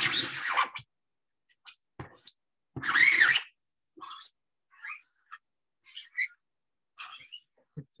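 A plastic card used as a squeegee, scraping across a screen-printing mesh stretched in an embroidery hoop as it pushes ink through. It comes in short, irregular strokes with silent gaps between them, with a louder stroke at the start and a squeaky one about three seconds in.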